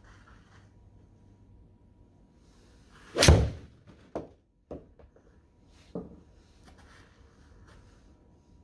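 A Titleist TMB 4-iron striking a golf ball off a hitting mat about three seconds in: one loud, sharp smack merging with the ball hitting the simulator's impact screen. A few fainter knocks follow over the next few seconds.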